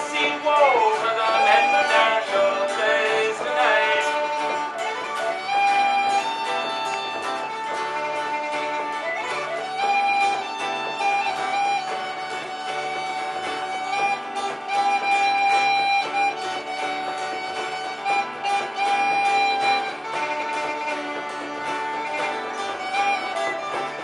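Live acoustic folk music: a strummed acoustic guitar accompanies a bowed string instrument that plays a gliding, ornamented melody and then holds long, steady notes.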